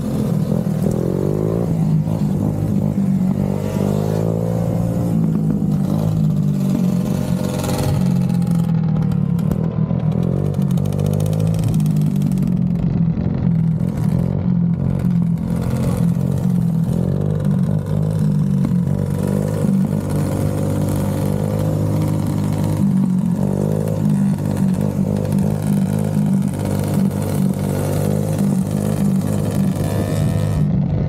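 Sport ATV and dirt bike engines running on the move, revving up and down repeatedly over a steady low engine note.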